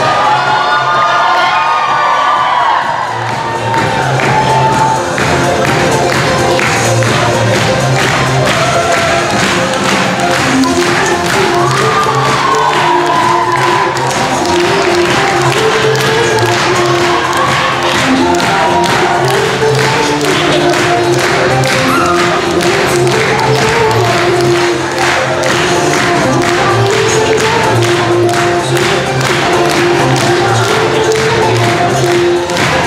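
A Chinese Vocaloid pop song with a synthesized singing voice over a steady electronic beat, played loud over a hall's speakers, with the audience cheering and shouting over it.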